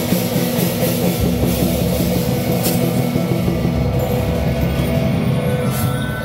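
Loud temple-procession percussion music: drums beating continuously with repeated metallic crashes and ringing tones over them.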